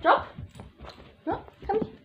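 A puppy giving short, high-pitched cries: a loud one right at the start, then two shorter ones in the second half.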